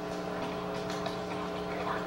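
Steady electrical hum of the room's equipment, made of several constant tones, with a few faint clicks from computer keys as text is typed.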